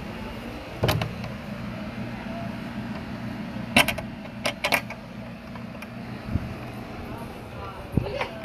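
A wooden fence gate being handled and passed through: a few sharp clicks and knocks from the latch and boards, two of them close together in the middle. Under them runs a steady low mechanical hum, with faint voices behind.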